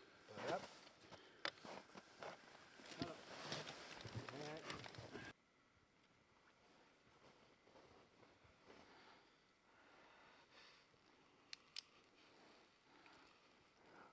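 Faint, indistinct voices with a few clicks for about five seconds, then an abrupt drop to near silence with two short sharp clicks near the end.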